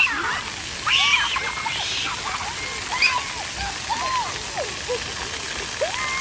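Splash-pad fountain jets spraying onto wet paving, a steady hiss of falling water, with children's high-pitched squeals and short wordless calls over it, several each second.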